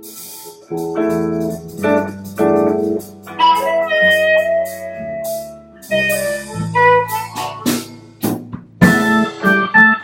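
Live band playing: guitar and keyboard chords and a melodic line, with sharp drum and cymbal hits coming in more strongly near the end.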